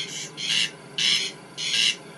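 Male corncrake giving its rasping 'crex crex' advertising call: harsh, dry rasps repeated about twice a second.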